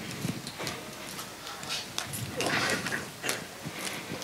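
Scattered knocks, clicks and rustling handling noise in a small room, with a louder scuffing spell a little past halfway.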